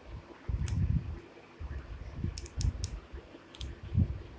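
Handling noise from a handheld camera being moved: low rumbling thumps with several sharp clicks, three of them close together about halfway through.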